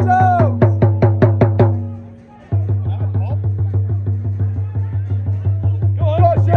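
Football supporters' drum beaten in a fast, steady rhythm, with fans chanting over it for the first couple of seconds. The drumming breaks off about two seconds in and starts again half a second later.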